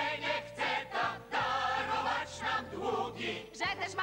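Group of voices singing together in chorus over instrumental band accompaniment, with a steady bass line.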